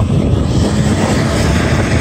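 Loud, steady low drone of a large engine running close by, without let-up.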